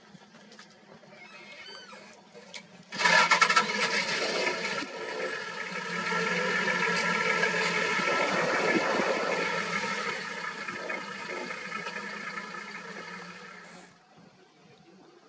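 An engine starts abruptly about three seconds in and runs steadily and loudly, then cuts off sharply at the end. A few faint high chirps come before it.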